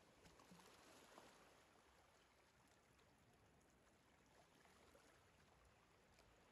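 Near silence: faint sea ambience, a steady low hiss with a few faint ticks.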